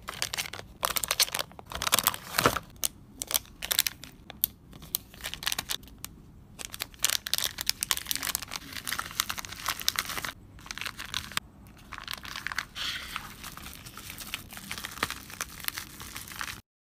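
Thin plastic zip-lock bags and a plastic bubble mailer crinkling and rustling as they are handled and packed, in irregular bursts with a few brief pauses.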